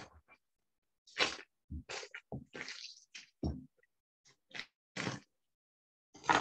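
Paper cheese wrapping crinkling and rustling in short, irregular bursts as a soft goat's cheese is unwrapped by hand, with a few soft knocks of handling.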